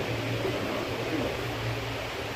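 Room tone between sentences: a steady low hum with a faint hiss underneath.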